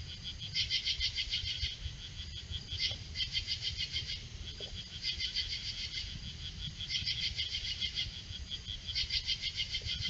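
Night insects calling in rhythmic bouts of rapid high-pitched pulses. Each bout lasts about a second and repeats every couple of seconds, over a steady low rumble.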